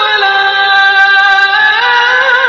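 A solo voice singing long held notes: one sustained note steps down in pitch just after the start and is held, then the voice rises again and starts to waver in ornaments near the end.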